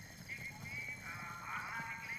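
Distant wavering cries, several overlapping, rising and falling in pitch and strongest in the second half.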